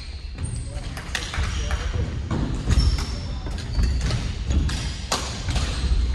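Badminton rackets hitting a shuttlecock in rallies: sharp cracks at irregular intervals of about a second, echoing in the hall, with brief high squeaks of shoes on the wooden court floor.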